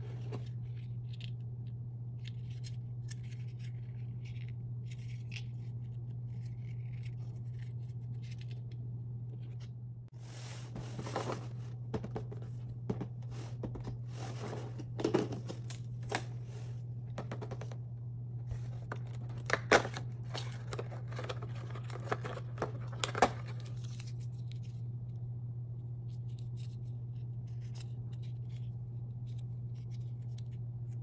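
Hands handling cardboard: a cardboard advent-calendar door being pried open and a miniature cardboard toy box being handled, heard as crisp clicks, scrapes and small tearing sounds over a steady low hum. The handling sounds are busiest in the middle, with the sharpest snaps about two-thirds of the way through.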